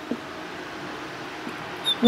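A marker writing on a whiteboard, squeaking faintly over steady room noise, with a short high squeak near the end.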